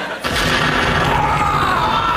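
A petrol bomb exploding on a TV sitcom soundtrack: a sudden bang about a quarter second in, then a loud, sustained din of crowd noise with a long, wavering high wail over it.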